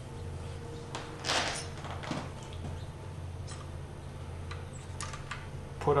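Faint clicks of wrenches and a feeler gauge being handled at the engine's valve tappets: a few scattered light taps, with a soft rustle about a second in, over a steady low hum.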